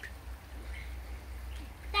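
Quiet outdoor background: faint, distant voices over a low steady rumble, with a child starting to speak loudly right at the end.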